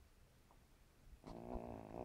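An elderly cat snoring in her sleep: quiet at first, then one snoring breath starts a little over a second in and lasts just under a second.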